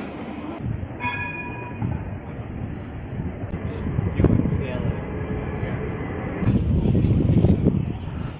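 A street tram passing on its rails, a low rumble that swells about four seconds in and again near the end, with a brief steady high tone about a second in.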